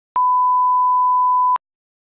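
Colour-bar test tone: a single steady pure beep held for about a second and a half, starting and stopping abruptly with a faint click at each end.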